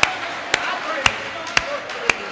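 Slow, steady clapping: single sharp claps at an even beat of about two a second, with voices talking faintly behind it.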